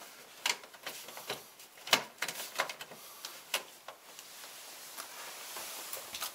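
Scattered light plastic clicks and knocks from a wall-mounted smoke detector being handled and turned on its mounting base, irregular and a few per second, thinning out after about four seconds.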